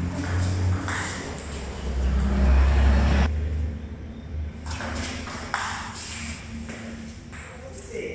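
A table tennis ball being hit back and forth, with sharp clicks as it strikes the bats and bounces on the table, echoing in a large hall. A low rumble runs under it through the first three seconds.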